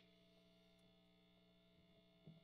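Near silence: a faint, steady electrical hum from the idling tube guitar amp between notes.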